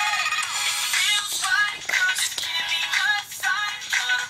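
A recorded pop song with singing over a backing track, played back from a computer.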